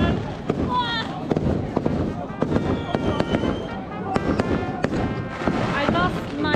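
Firecrackers popping in quick, irregular cracks all through, over the voices of a packed crowd. A steady pitched tone sounds briefly about halfway through.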